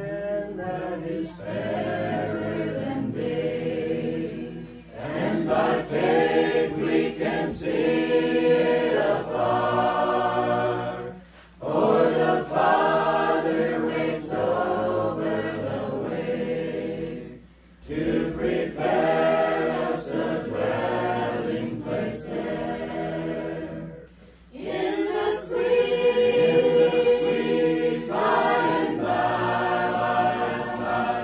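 A group of voices singing together a cappella, with no instruments, in long sung phrases separated by short pauses for breath about every six seconds.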